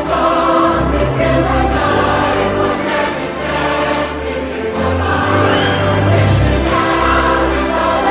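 A Christmas song: a choir singing over instrumental backing.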